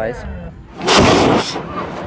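A loud blast, like an explosion or a burst of flame, about a second in: it swells quickly, lasts about half a second and dies away.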